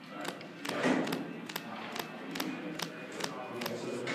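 Sleeved trading cards clicking and tapping against the table and playmat as a player handles his cards, in a run of short, sharp taps about two or three a second.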